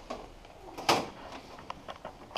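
A single sharp plastic clunk about a second in, then a few faint clicks: a Xerox J75 printer's interface module being handled by its docking latch and front door as it is undocked.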